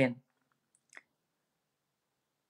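A man's spoken word trails off just after the start, then near silence broken by a single faint click about a second in.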